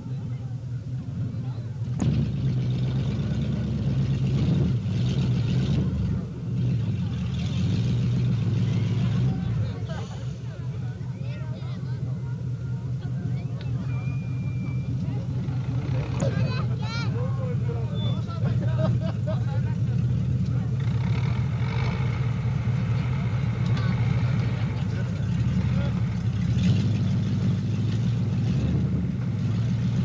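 An off-road vehicle's engine running steadily at low revs, with spectators' voices over it.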